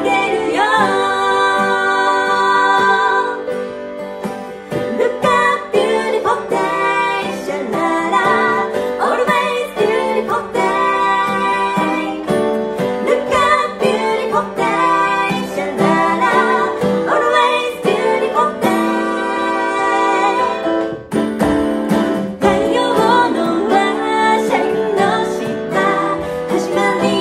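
Two women singing a J-pop song in close harmony, live, to strummed acoustic guitar and a small electronic keyboard, captured on a single iPad with no microphones so the room's noise is heard too.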